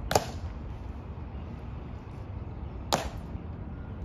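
Two sharp clicks about three seconds apart from the honor guard soldiers' drill movements during the changing of the guard, over a steady low outdoor hum.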